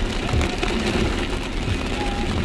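Heavy rain hitting a car's roof and windshield, heard inside the cabin as a dense, steady hiss with occasional sharper drop hits.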